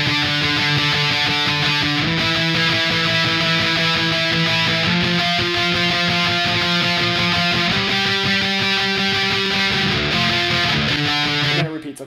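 Electric guitar strumming octave chords without a break, walking up from the 5th fret to the 7th, 8th and 10th and back down to the 8th, the chord changing every two to three seconds. It cuts off abruptly just before the end.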